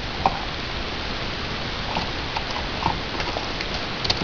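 Light scattered clicks and faint crinkles of a small plastic parts bag being handled, over a steady hiss.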